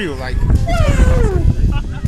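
A woman's voice giving two long, falling cries as she reacts, over a steady low rumble of surf and wind.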